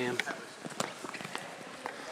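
Wrestling shoes squeaking and scuffing on a wrestling mat as several wrestlers shift into position, in scattered short squeaks and light knocks.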